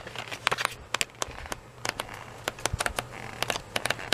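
Pages of a patterned paper pad being flipped by hand: dry paper crackling and rustling in many quick, irregular little clicks as each sheet turns.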